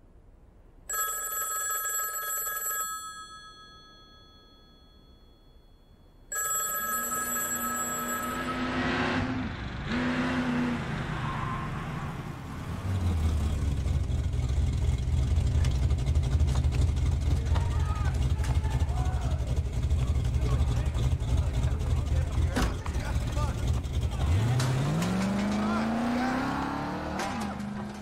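A landline telephone rings twice, each ring about two seconds long, with a quiet gap between. A car engine then comes in, runs steadily with a deep drone, and revs up with a rising pitch near the end.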